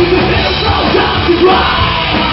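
Live rock band playing loudly: a lead singer's vocals over electric guitars and drums.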